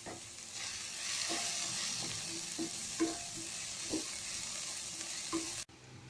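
Chopped vegetables sizzling steadily as they fry in a kadai, stirred with a utensil that knocks against the pan several times. The sizzle cuts off suddenly shortly before the end.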